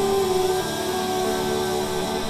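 A live rock band playing, with long held notes and chords ringing out over the rhythm.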